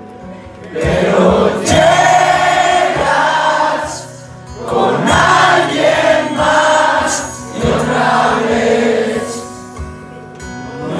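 A band playing a song live with singing in three long phrases, with short dips about four and seven and a half seconds in. It is heard from among the audience, as a phone records it.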